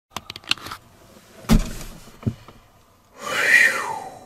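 Handling noise of a camera being set up inside a truck cab: a few sharp clicks, then a knock with a dull thud about a second and a half in and another small click. Near the end comes a short hissing rush that swells and fades.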